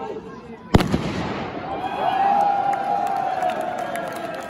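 A single loud firecracker bang under a second in, echoing briefly, followed by the crowd cheering and shouting.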